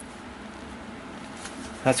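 Faint, steady low buzzing hum of background room noise, then a man's voice starts near the end.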